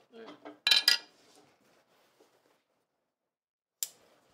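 Sharp clinks of a metal shoe hammer set down on a granite slab: two close together about a second in, and one more near the end, with faint rustling of leather in between.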